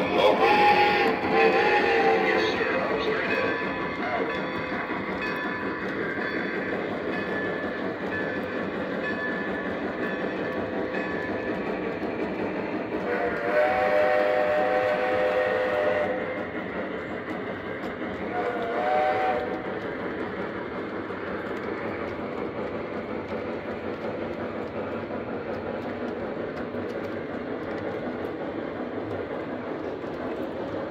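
Lionel Legacy O-gauge freight cars rolling over the track with a steady clatter, while the steam locomotives' onboard sound system blows the whistle: a longer blast about 13 seconds in and a short one about 19 seconds in.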